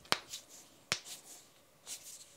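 Knuckles cracking: two sharp pops under a second apart, with soft rustling of the hands pressed together between them.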